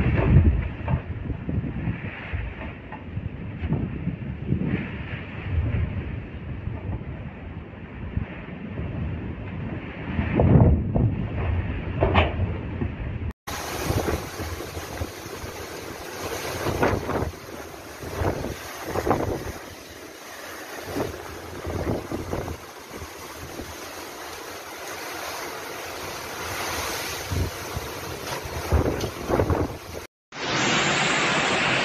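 Typhoon-force wind gusting and buffeting the microphone, with storm-surge waves surging over a seawall. About 13 seconds in the sound cuts abruptly to a brighter, steady hiss of gale wind and rain, rising and falling in gusts.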